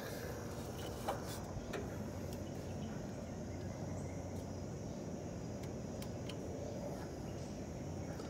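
Steady outdoor background noise with a thin, high, steady tone running through it, and a few faint clicks from handling about one and two seconds in.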